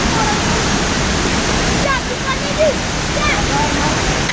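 Fast-flowing river rushing over shallow rapids, a loud, steady, even rush of water, with faint, brief calls from distant voices over it.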